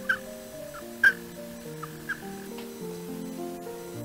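A recording of an American toad (Anaxyrus americanus) calling, a thin high trill with short chirps over it that stops about two and a half seconds in, played over steady background music.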